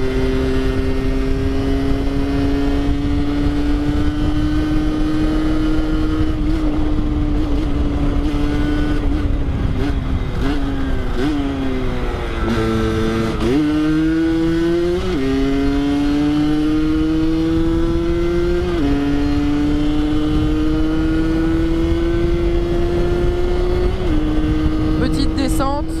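Rieju MRT 50's two-stroke 50 cc engine running on the move, with wind noise on the microphone. Its note climbs slowly, eases off and drops in pitch about ten seconds in, then the revs rise sharply and fall in three sudden steps as it shifts up through the gears.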